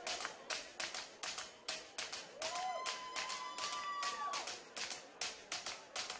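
Audience clapping in sharp, separate claps, several a second. One long high cheer rises and holds for about two seconds from about two and a half seconds in.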